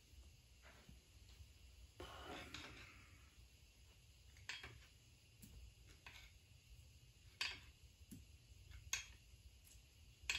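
Near silence with a handful of faint, scattered metallic clicks: a freshly installed crankshaft in a Ford FE 427 SOHC block being shifted by hand to feel its end play, which turns out generous.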